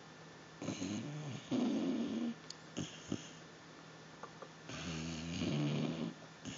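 Basset hound snoring in its sleep: two long snores, the first about half a second in and the second near the end, with a short, weaker one between.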